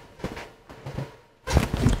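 A towel waved through the air overhead: faint rustling, then about one and a half seconds in a loud half-second whoosh of moving air buffeting the microphone.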